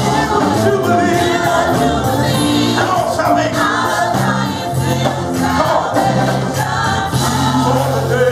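Gospel praise team and choir singing with live band backing, sustained low bass notes underneath.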